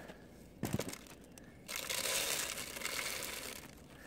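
Bird seed being poured from a container into a hanging bird feeder: a dry, rattling hiss of seed lasting about two seconds, preceded by a brief knock about a second in.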